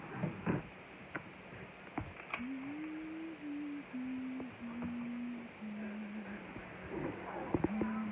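A person humming a slow tune: a string of held single notes stepping down in pitch, starting about two seconds in, with one more held note near the end. A few light clicks come before the tune.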